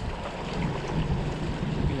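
A boat engine running at slow trolling speed under wind buffeting the microphone, with water washing along the hull.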